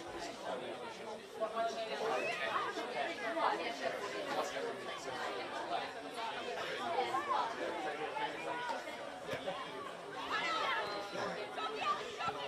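Several overlapping voices calling out and chattering across a football pitch, with no single voice close enough to make out words.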